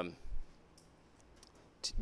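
A few faint, sparse clicks and taps of a stylus on a tablet screen during drawing, in a pause between spoken words.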